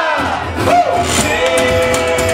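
Live blues music from a resonator guitar and washboard duo: crowd voices shouting along early on, then a long held sung note from about a second and a half in.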